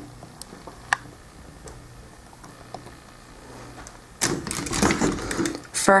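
Handling noise from a plastic action figure: a few faint light clicks, then about four seconds in, loud rustling and knocking as fingers grip and move the figure's hand close to the microphone.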